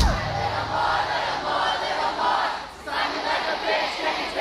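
Concert crowd cheering and yelling just as the band's song stops. Many voices overlap, with a brief lull about three seconds in.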